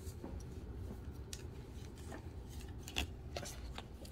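Trading cards being set down and slid on a tabletop: a few faint, scattered clicks and taps, the clearest about three seconds in.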